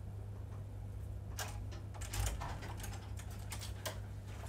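A few scattered light clicks and knocks, the cluster about two seconds in the loudest, over a steady low hum.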